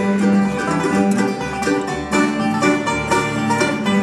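Bluegrass band playing an instrumental break without singing: banjos, acoustic guitars and mandolin picking quick notes over an upright bass.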